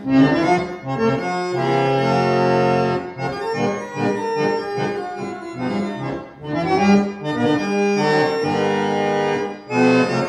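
Harmonium attributed to H. Christophe & Etienne, Paris, c.1868, being played: free reeds driven by foot-pumped bellows sound a phrase of sustained chords, with short breaks between phrases.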